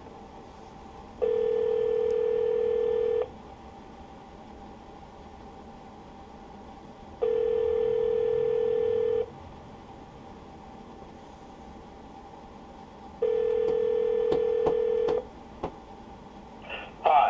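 North American telephone ringback tone heard over the line: three rings, each about two seconds long with about four seconds between them. The mayor's extension is ringing unanswered before voicemail picks up.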